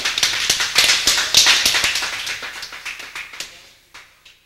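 A short burst of hand clapping, many quick irregular claps that die away over about three and a half seconds.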